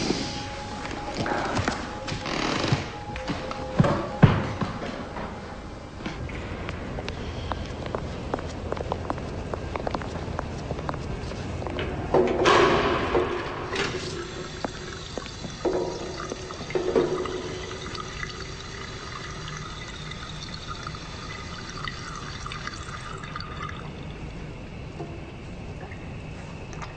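Music with noisy rushes of running water, the loudest about halfway through, followed by a stretch of steady sustained tones.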